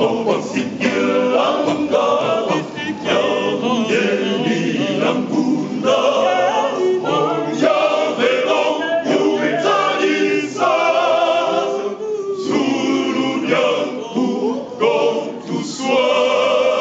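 A choir of voices singing together.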